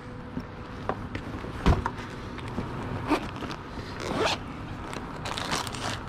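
The zipper of a black zip-around portfolio being pulled open in a couple of rasping strokes, with handling clicks and rustles. There is a single low thump a little under two seconds in.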